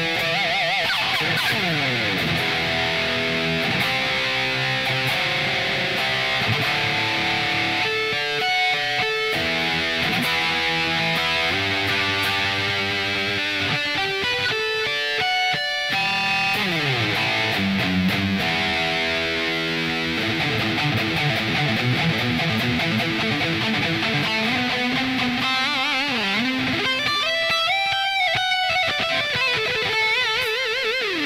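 Electric guitar, a three-pickup Destroyer copy, played in a solo shred jam: rapid runs of notes, held notes and a few long sliding falls in pitch.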